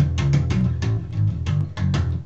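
Fender four-string electric bass played through an amp: a quick, funky run of plucked notes, about six or seven a second, with strong low notes.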